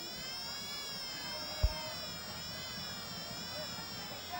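A steady high buzzing tone with many overtones, wavering slightly in pitch, with one short low thump about one and a half seconds in.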